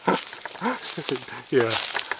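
Men's voices in short remarks and laughter.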